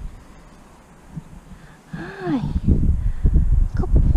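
Low, irregular rumbling on a head-mounted camera's microphone, typical of wind and handling noise. It is quiet at first and grows loud from about halfway. A brief murmured voice comes in near the middle.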